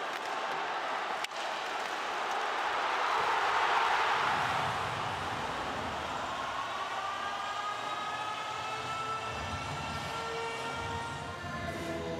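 Ice hockey arena crowd noise swelling to a peak about four seconds in, followed by a long siren-like tone rising slowly in pitch, with shorter held tones beneath it near the end.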